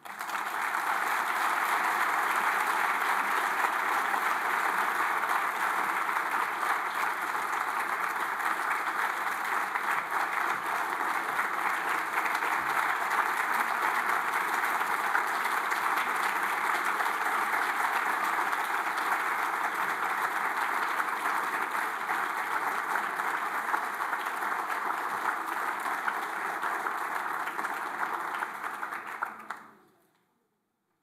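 A large audience applauding, a dense and steady ovation of many people clapping that dies away near the end.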